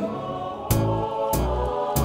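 Electronic keyboard accompaniment in a pause between sung lines: held chords in a choir-like pad over bass notes, with a steady drum beat about every two-thirds of a second.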